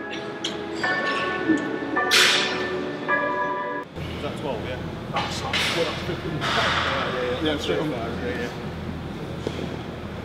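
Background music with sustained notes. About four seconds in it cuts to busy gym ambience: indistinct voices and a few sharp clanks of metal weights.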